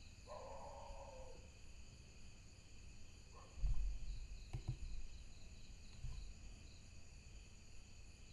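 Faint, steady cricket chirping with a quick repeating pulse. About three and a half seconds in comes a cluster of dull low thumps, the loudest sound, and a short mid-pitched sound comes near the start.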